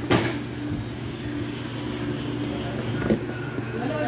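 Refrigerator running with a steady low hum. There is a sharp knock right at the start and a smaller one about three seconds in.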